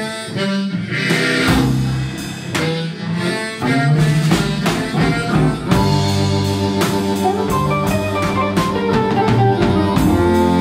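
Live blues band playing: a harmonica played into a hand-held microphone leads over electric guitar, bass and a drum kit keeping a steady beat. About six seconds in, the harmonica settles into a long held note.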